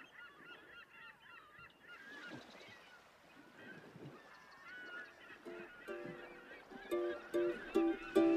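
Faint background of small birds chirping rapidly. About five seconds in, plucked notes of background music come in and grow louder toward the end.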